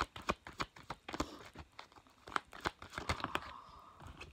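A deck of tarot cards being shuffled by hand: a quick, irregular run of card snaps and flicks.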